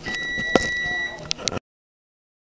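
An electronic beep: one steady high-pitched tone lasting about a second, with a sharp click partway through and a few short clicks after the tone stops.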